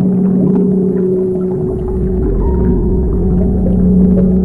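Ambient background music of long, held synth-like tones, with a deeper low layer coming in a little before halfway.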